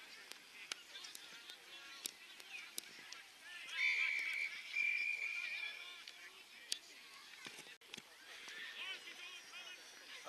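Umpire's whistle on an Australian rules football ground: a short blast about four seconds in, followed at once by a longer one, over players shouting across the field.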